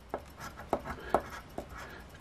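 A coin scraping the silver latex coating off a scratch-off lottery ticket in short, irregular strokes. The coating is stiff and hard to scratch.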